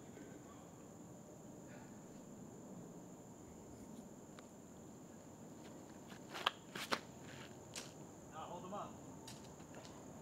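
Quiet outdoor ambience with a steady high insect drone, broken by two sharp taps about six and a half and seven seconds in as a disc golfer steps through and throws his tee shot.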